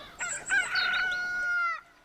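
A rooster crowing once: a few short rising notes, then one long held note that drops away just before the end.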